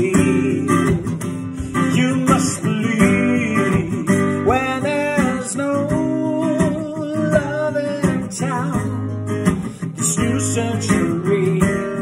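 Steel-string acoustic guitar strummed in a steady pop rhythm, with a man's voice singing a melody over it that includes one long held note about halfway through.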